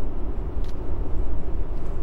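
Steady low rumbling background noise with no distinct events.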